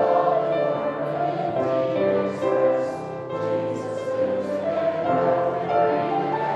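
Congregation singing a hymn together, holding each sung note before moving to the next.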